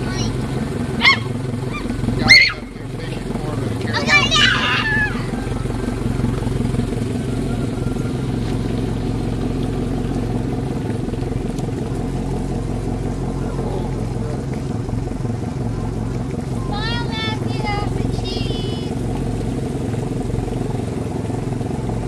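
An engine running at a steady idle-like hum throughout. Over it, a young child gives several short high-pitched shouts and whines, near the start and again about three-quarters of the way in.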